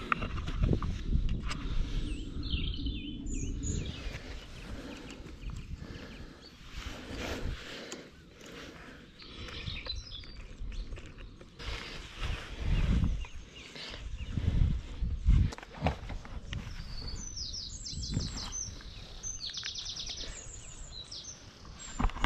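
Birds singing, with a run of quick repeated high notes from about 17 to 21 seconds in, over an uneven low rumble and scattered knocks.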